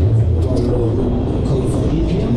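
Loud, steady rumble of rushing air and running machinery on a camera riding a Technical Park Street Fighter thrill ride in motion.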